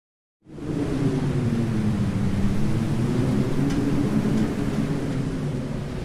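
Sound-design rumble for a logo intro: a deep, steady rumbling drone with wavering low tones that starts about half a second in, out of silence. Two faint ticks come about two-thirds of the way through.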